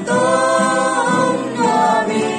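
A small mixed group of voices singing a worship song together, holding long notes and moving to a new note about halfway through.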